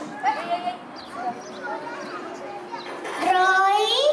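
A young child's high voice, amplified through a microphone, begins about three seconds in with long, drawn-out, sing-song syllables. Before that there is scattered chatter from the young audience.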